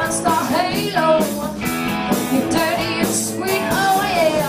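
A live rock band playing a glam-rock boogie, with electric guitars, drums and saxophone and a woman singing.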